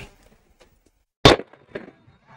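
A single sharp firework bang a little over a second in, followed by faint crackle.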